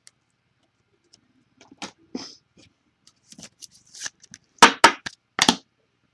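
Trading cards and packaging handled by hand: scattered soft rustles and clicks, then three loud sharp knocks near the end.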